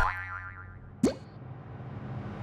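Production logo sound effects: a sharp hit with a falling pitch sweep at the start, then a second sharp hit about a second in that springs quickly upward in pitch, over a low steady hum.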